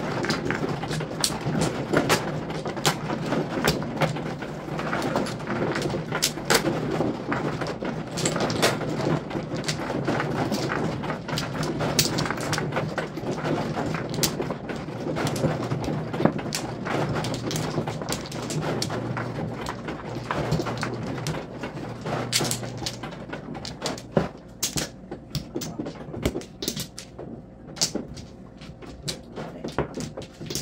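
Mahjong tiles clacking as players push the walls forward, then draw and sort their hands: a dense run of quick clicks that thins out in the last few seconds. A low steady hum runs underneath until about three-quarters of the way through.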